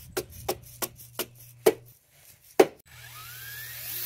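A hammer tapping a rolled wire-mesh baffle into a dirt bike's steel exhaust pipe: six sharp knocks, irregularly spaced, the last two the loudest. Near the end a cordless drill starts to whir.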